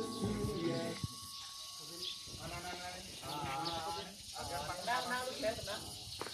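Playback music stops about a second in. After a short lull, people's voices are heard, wavering in pitch.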